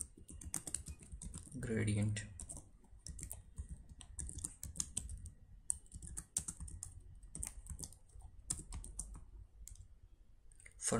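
Typing on a computer keyboard: irregular runs of short key clicks.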